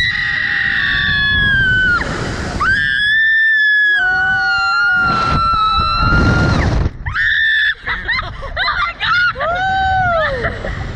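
Riders screaming on a SlingShot reverse-bungee ride during the launch: two long, high, held screams in the first seven seconds, then a string of shorter screams rising and falling in pitch near the end.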